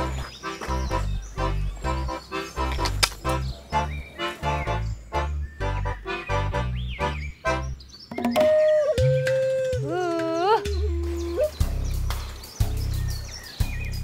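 Background music: a bouncy comic tune of short, rhythmic notes over a walking bass, giving way about eight seconds in to a held melody that bends and slides in pitch.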